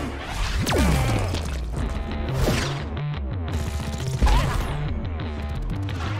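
Action film score with fight sound effects laid over it: a whoosh sweeping down in pitch about half a second in, scattered hits, and a heavy thump about four seconds in.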